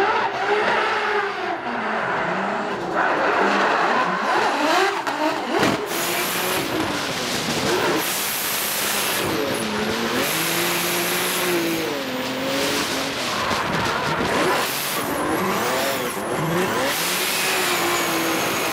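A performance car's engine revving up and down over and over, with tyres squealing under hard driving such as drifting.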